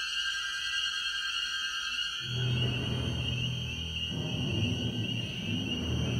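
Contemporary orchestral music with electronic sounds. A high, wavering sustained band holds throughout, and a low, dark mass of sound enters about two seconds in, with some slow gliding pitches.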